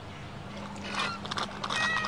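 Playground swing chains squeaking and clicking faintly as two children swing, with short high squeaks near the end over a faint steady low hum.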